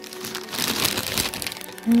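Plastic packaging crinkling and rustling as it is handled, a dense crackle that starts shortly after the beginning and stops near the end.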